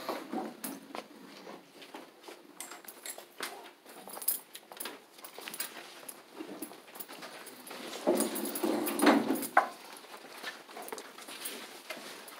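Handling noise from a handheld camera being carried while walking, with scattered clicks and knocks and indistinct voices in the room; a louder burst of voice-like sound comes about eight seconds in.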